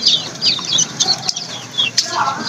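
A brood of chicks peeping: many short, high chirps overlapping, a few each second.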